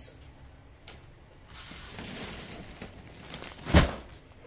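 Plastic postal mailer bag rustling as it is handled, then a single thump near the end as the parcel is set down on the table.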